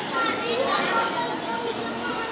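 Children's high-pitched voices calling and chattering, with other people talking.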